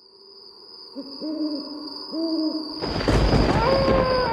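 Night-time sound effects: an owl hooting twice over a faint steady high tone. About three seconds in comes a sudden loud rush of noise, and a long, slowly falling wail begins.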